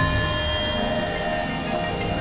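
Experimental electronic music: a dense, layered drone of many steady held tones over a heavy low rumble.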